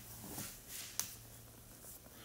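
Quiet pause in a man's narration: a faint steady low hum, a soft faint noise about half a second in, and a single sharp click about a second in.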